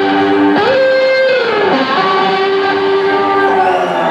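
Electric guitar played live through a loud amplified system, sustained ringing notes with a slide up in pitch about half a second in, then a slow slide back down, with no drums.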